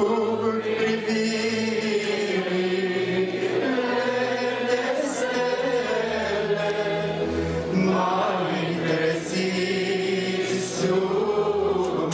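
A slow Christian hymn sung in chorus over Yamaha Tyros arranger-keyboard accompaniment, amplified through a PA. A man's voice sings into a microphone over steady held bass notes.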